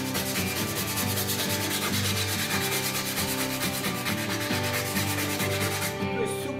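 120-grit sandpaper rubbed by hand over the bare steel of a welded car-body repair, in quick, even back-and-forth strokes. It is scuffing the metal so that the primer will stick.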